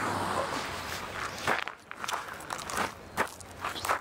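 Footsteps on a gravel or dirt roadside: a few irregular crunching steps through the second half, after a rushing noise that fades away over the first second and a half.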